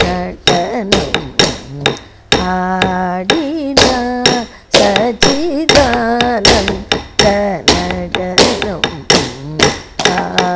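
Carnatic singing of a kirtanam, the melody sliding and ornamented over a steady held note, cut through by many sharp wooden knocks, two or three a second: a wooden stick beating time on a wooden block (thattukazhi), the nattuvangam that keeps time for Bharatanatyam dance.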